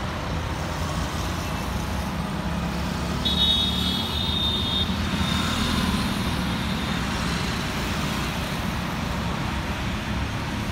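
Road traffic: the steady engine and tyre noise of passing cars and motorcycles. About three seconds in, a high-pitched horn sounds for about a second and a half, then fades.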